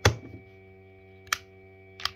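Pieces of a physical 2^4 hypercube puzzle clicking as it is twisted and regripped: a sharp click right at the start and a second, shorter click about a second later, over a faint steady hum. The puzzle's magnetic pieces are snapping together.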